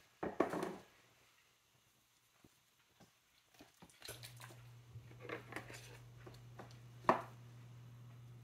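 Plain Greek yogurt being scooped out of a plastic tub with a plastic measuring cup: soft scraping and handling clicks, with one sharp click about seven seconds in. A faint steady low hum starts about four seconds in.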